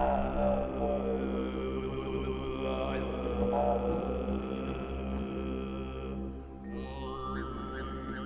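Throat singing: a steady low sung drone with a slow melody of overtones floating above it. Near the end the overtones rise into a high, whistle-like line.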